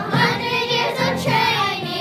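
Children singing a song with musical backing.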